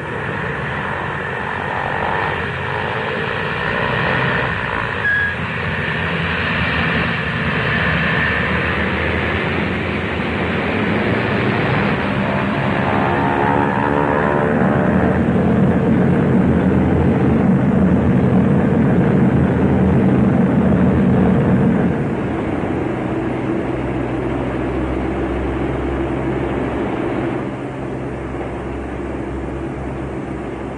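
Radial piston engines of Boeing B-17 Flying Fortress bombers running at high power in a steady, loud drone. It swells gradually, then drops in level about 22 seconds in and again near the end.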